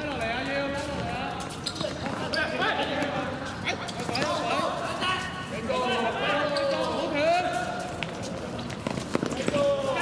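Footballers shouting calls to one another across a hard court, with a few sharp thuds of the ball being kicked and bouncing on the hard surface.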